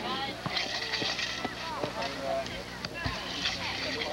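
Soccer players' indistinct shouts and calls across the field during play, several voices overlapping, with a few sharp knocks and a steady low hum underneath.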